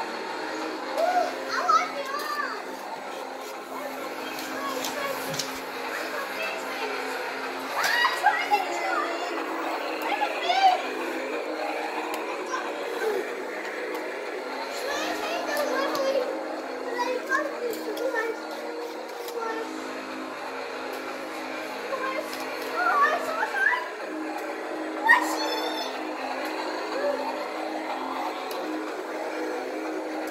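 Toy Christmas train set running around its track and playing a tune of held notes that step from one pitch to the next. A young child's voice comes in short bursts over it, near the start, around the middle and again near the end.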